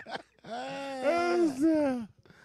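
A man's voice giving a long, drawn-out mock wail, imitating someone crying. It starts about half a second in and holds in two long pushes, with a short break between them.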